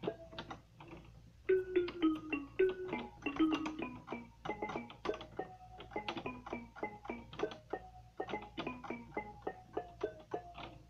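Portable electronic keyboard playing a quick melody by ear, single notes over lower accompanying notes at about three to four notes a second. It is softer for the first second and a half, then louder.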